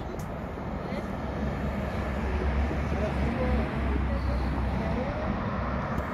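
Outdoor street noise: a steady low rumble that swells through the middle, with a car driving along the road and faint distant voices.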